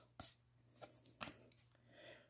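Near silence with a few faint, short ticks of baseball trading cards being slid off a handheld stack and flipped.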